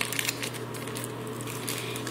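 Thin plastic zip-top bag crinkling and crackling as it is pulled open by hand, in a string of short sharp clicks.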